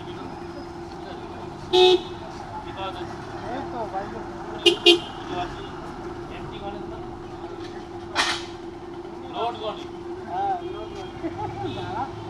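Street traffic with short vehicle horn toots: one about two seconds in and two quick ones near five seconds, over a steady hum. A short hiss comes about eight seconds in.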